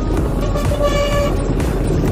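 Road and engine rumble from a moving vehicle, with a vehicle horn sounding one short toot of about half a second, about a second in.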